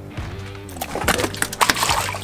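A burbot is dropped into an ice-fishing hole and splashes and thrashes in the water from about a second in, with background music underneath.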